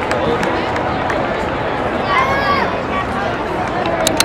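Ballpark crowd noise: a steady murmur of many spectators' voices, with one voice calling out briefly above it about two seconds in.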